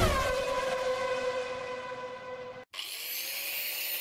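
Electronic sound-effect tone: a steady, held chord that slowly fades, breaks off suddenly about two-thirds of the way through, then a new, quieter tone that slowly rises in pitch.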